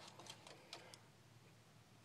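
Near silence, with a few faint clicks in the first second from small die-cast toy cars being handled on a wooden shelf.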